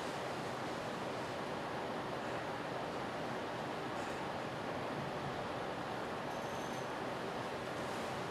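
Steady, faint hiss of lecture-room tone picked up by the desk microphone, with no speech.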